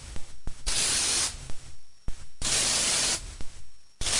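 A hand spray bottle misting a moisturizing spray onto hair. There are two long hisses of under a second each, a shorter, fainter one between them, and small clicks in the gaps.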